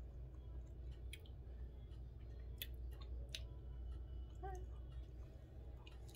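Low steady room hum with a few faint, scattered clicks, such as a phone being handled, and a brief voiced murmur from a woman about four and a half seconds in.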